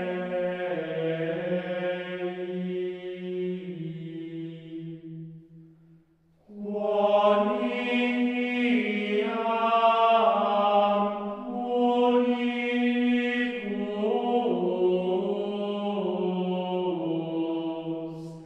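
Gregorian chant: male voices singing one unaccompanied melodic line, with a short break between phrases about six seconds in.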